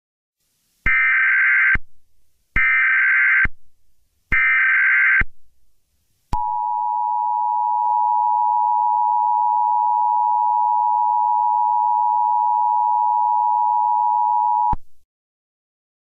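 Emergency Alert System tones: three short, harsh data bursts of the SAME header, each just under a second, followed by the steady two-tone EAS attention signal, held for about eight seconds before it cuts off.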